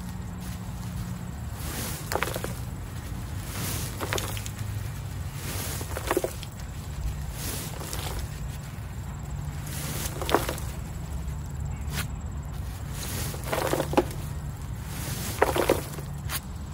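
Woven landscape fabric being wound by hand onto a spool, a short rustling scrape at each turn, roughly every two seconds, with dry leaf debris on the fabric crackling. A steady low hum runs underneath.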